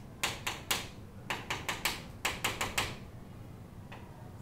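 Chalk writing on a chalkboard: quick, sharp taps and short scrapes of the chalk, in three bursts of four or five strokes each.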